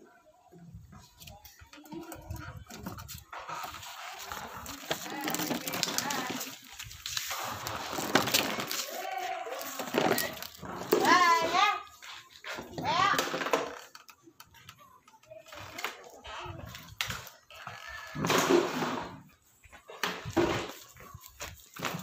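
A young child's voice, babbling and calling out in bursts without clear words, with a wavering up-and-down pitch in the loudest calls near the middle.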